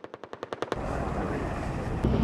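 A machine gun firing a rapid burst, roughly a dozen shots a second, that cuts off about three-quarters of a second in; then the steady low rumble of a Leopard 2A4 tank running.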